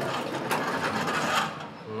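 A glass door's mechanism running with a dense, rattling mechanical whir that starts suddenly and fades out after about a second and a half.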